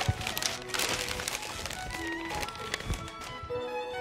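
Background music over a large sheet of paper rustling and crinkling as a folded paper bird is handled and shaken.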